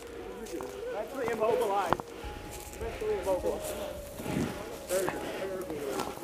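Indistinct voices with no clear words, and a few sharp clicks of footsteps on the forest floor; the loudest click comes about two seconds in.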